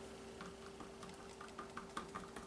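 Faint, irregular light ticks of a plastic cup and craft stick being handled while mixing acrylic paint, over a steady faint hum.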